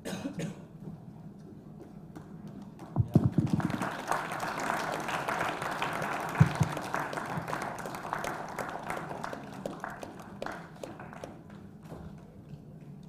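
A cough, then an audience applauding, starting about four seconds in after a few low thumps and thinning out near the end.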